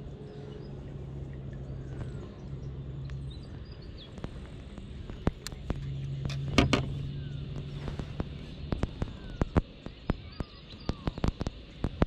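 A small Australian bass being landed by hand: a run of sharp clicks and knocks in the second half as it flaps on the line and is handled. Under it are a steady low hum that comes and goes, and faint bird chirps.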